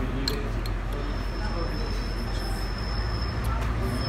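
Several buses and street traffic running close by, a steady low rumble, with a thin high steady whine joining about a second in.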